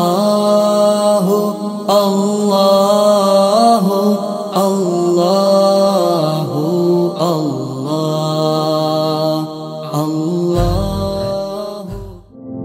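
Background devotional vocal chant: a voice sings long, bending melodic lines of repeated 'Allah' over a steady drone. A deep low rumble comes in near the end.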